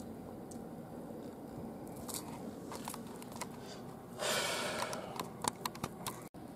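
Light handling noise: a soft rustle about four seconds in, then a few sharp clicks and knocks near the end.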